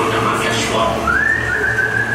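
A prisoner's whistle calling the dog in the jail scene: a single whistle that slides up about a second in and then holds steady, over men's voices.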